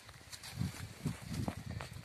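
Irregular footsteps of people walking downhill through tea bushes and dry grass, with leaves brushing and a few sharp crackles of twigs.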